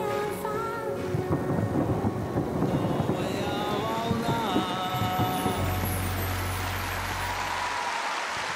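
Closing music with sustained notes, with a dense run of fireworks bangs and crackle over it. A steady low rumble comes in for the last two seconds or so.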